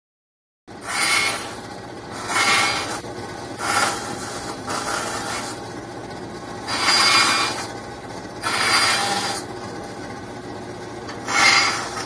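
Band saw running steadily, its blade cutting a small piece of wood in short bursts: about six cuts, each a second or less, between stretches of the machine running on its own.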